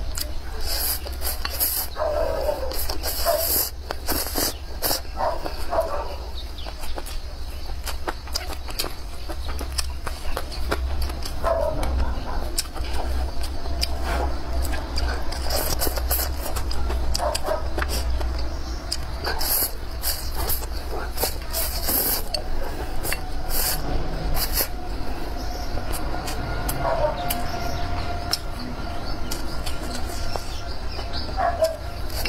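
A person eating spicy stir-fried rice noodles: many close, quick chewing and slurping clicks, over a steady low hum, with occasional short animal calls in the background.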